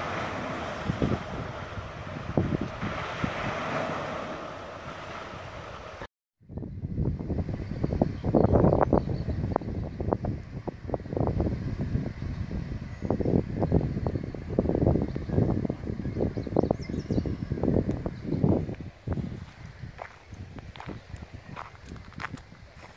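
Wind buffeting the phone's microphone in irregular gusts, with a steadier rush before the sound cuts out briefly about six seconds in.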